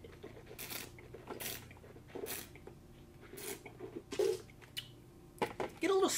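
A taster sipping red wine and slurping it in the mouth, drawing air through it in about five short noisy pulls.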